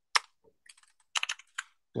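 Keys of a computer keyboard being typed on in a few short runs of clicks, entering a terminal command.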